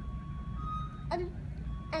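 A steady, high electronic beep tone held for over a second, broken off briefly and then sounding again, over a low steady background hum; a child makes a short vocal sound about a second in.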